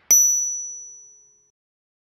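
A single bright chime sound effect: one clean, high 'ding' struck just after the start, ringing out and fading smoothly over about a second and a half.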